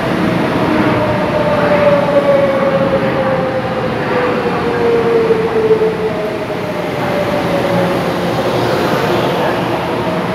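A Taiwan Railways EMU500 electric commuter train running slowly into a station and slowing down, with a steady rail rumble and a whine that falls slowly in pitch over the first six seconds, then a fainter tone near the end.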